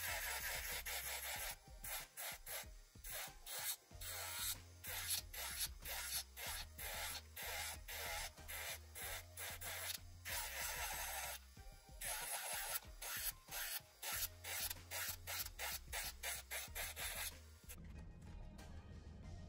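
Handheld electric nail drill with a sanding band bit filing a nail tip: gritty sanding in many short passes with a few longer ones, over a low motor hum, stopping shortly before the end.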